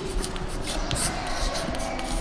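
Scratchy rustling with short, irregular strokes, as of writing by hand.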